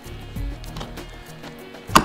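Soft background music, with one sharp click near the end as a blue mains hookup plug is worked into a camper van's electric hookup inlet.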